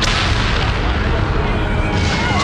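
Explosions and artillery fire: a sudden blast right at the start, followed by a dense, loud rumble of battle noise.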